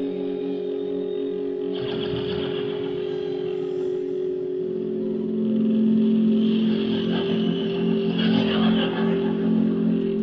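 Live rock band playing a slow, drone-like passage of long held notes, with a new low note coming in about halfway through and louder swells about two seconds in and near the end.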